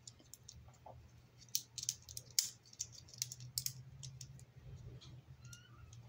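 Faint, scattered small plastic clicks from a Bakugan toy ball, with a low steady hum underneath.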